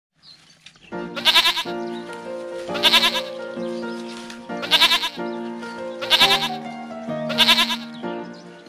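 Goat bleats, five in the space of about seven seconds, each a loud wavering 'maa' with a shaky tremolo, over background music with sustained notes.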